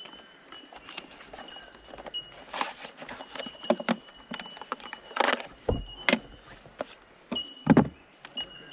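Unpacking handling noise: packaging and a coiled charging cable being handled and lifted out of an accessory case, with scattered knocks, scrapes and rustles, the loudest around the middle and again near the end. A faint high steady tone comes and goes behind them.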